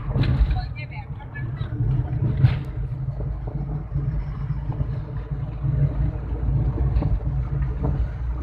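Steady low engine and road rumble heard inside a moving car's cabin, with a short sharp click about two and a half seconds in.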